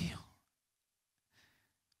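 A man's voice trailing off at the start, then near silence broken by a faint in-breath close to a handheld microphone about a second and a half in.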